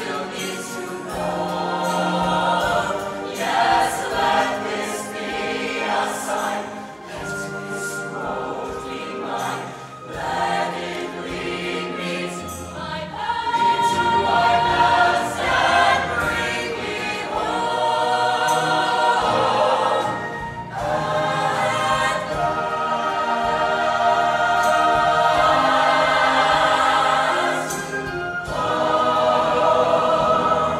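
Mixed high-school show choir singing in harmony, growing louder about halfway through.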